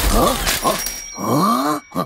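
A cartoon bunny character's wordless vocal sounds: three short utterances that slide down in pitch, the last the longest, with no words. Under them a magic sparkle sound effect, a low rumble at the start and thin high ringing tones that hold through the middle.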